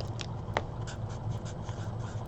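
Pen writing on paper: faint scratching with a few light ticks, over a steady low hum.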